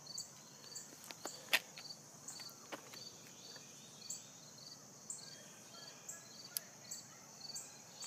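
Faint insect chirring, with a small chirp repeating about twice a second over a steady high hiss, broken by a few sharp clicks.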